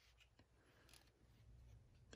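Near silence: room tone, with a couple of very faint soft ticks about a second in and near the end.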